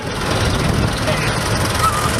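Fordson Major tractors and a Scammell recovery truck with their engines running steadily, a low rumble with no revving.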